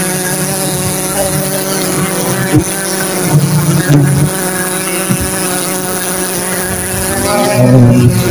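Dense swarm of giant honey bees (Apis dorsata) buzzing loudly and steadily around their comb as it is being cut, the hum swelling briefly a few times.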